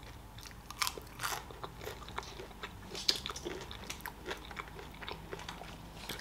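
A person chewing a mouthful of crispy breaded fried food, with soft crunches and wet mouth clicks at irregular intervals.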